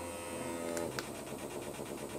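Small electric vibration motor of a handheld rechargeable wand massager running with a steady low hum. Two light clicks come just before a second in.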